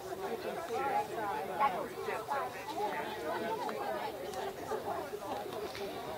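A group of people chatting, several overlapping conversations too indistinct to make out, with a laugh near the end.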